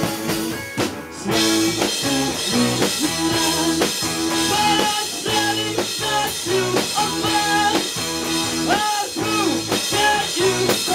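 A rock band playing live in a small room, with electric guitar, keyboard and drum kit. After a short dip about a second in, the full band comes back in louder with cymbals.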